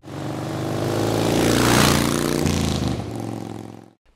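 Motorcycle engine sound passing by: it grows louder to a peak about two seconds in, drops in pitch, then fades away.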